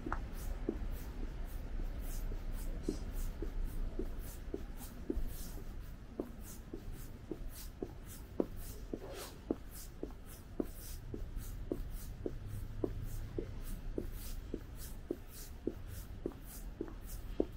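Walking footsteps, evenly paced at about two steps a second, over a low steady background hum.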